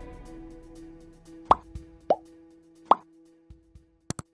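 Three short plop sound effects from a subscribe-button animation, about a second and a half, two and three seconds in, over the fading tail of soft background music holding a low note. Two faint clicks follow near the end.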